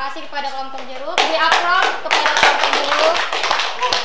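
A small group clapping in a room, starting about a second in, with several voices talking and calling out over the applause.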